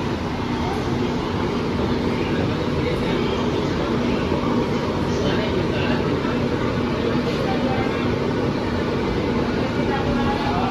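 Ahmedabad Metro train running on an elevated track, heard from inside the coach: a steady rolling rumble with a constant low hum.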